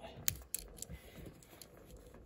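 A few faint, sharp clicks in the first second and a half as the small pen blade of a Victorinox Cybertool M/34 Swiss Army knife is pried out of the handle with a fingernail.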